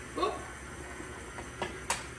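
A woman's brief "ooh", then two sharp clicks about a second and a half in as eggs are cracked and tipped into a stand mixer's steel bowl.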